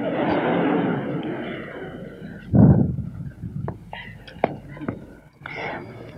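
Audience in a lecture hall laughing at a joke, loudest at the start and dying away over about two seconds. A short louder burst comes about halfway through, then a few small knocks.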